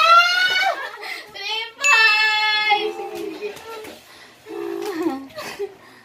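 Excited, high-pitched voices: a rising squeal-like call at the start and a long held high call about two seconds in, followed by quieter, lower voice sounds.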